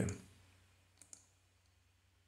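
Two faint computer mouse clicks close together about a second in, over near-silent room tone.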